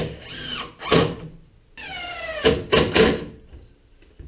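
Cordless screw gun driving screws into wooden blocking in two runs about a second and a half apart, its motor whine falling in pitch as each screw bites, with a few sharp knocks.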